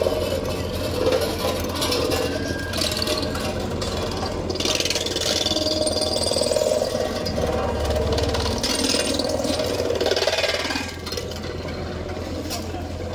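Diesel engine of a JCB road roller running steadily as the machine rolls slowly forward, a constant low rumble with the level easing a little near the end.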